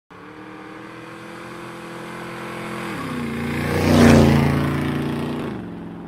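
A motorcycle passing by as an intro sound effect. Its engine note builds in loudness, steps down in pitch about three seconds in and again near the end, and is loudest about four seconds in as it goes past, then fades away.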